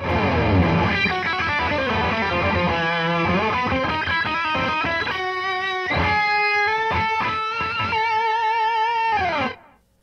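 Electric guitar played through a BOSS ME-80 multi-effects pedal on a classic country patch, a small amp model with a little slapback delay, picking a country lick. Some notes are bent, and held notes waver with vibrato. A final held note dies away about nine and a half seconds in.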